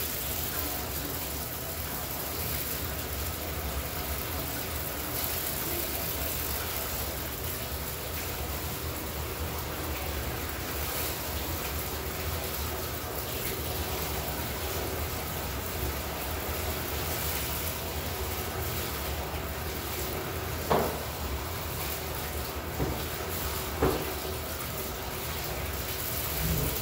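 Bathtub faucet running steadily as a paint roller cover is rinsed out under the stream, with a couple of short knocks near the end.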